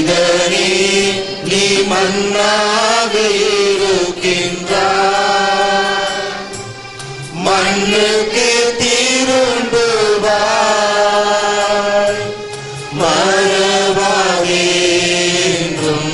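Church hymn sung as one melodic line in long, drawn-out chanted phrases, with short breaks about four, seven and twelve seconds in.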